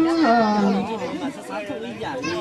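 The last held note of a Hmong kwv txhiaj sung-poetry phrase slides down and fades within the first second. Several people then chatter over one another.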